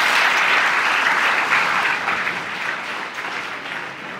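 Audience applauding at the close of a lecture, the clapping fading away toward the end.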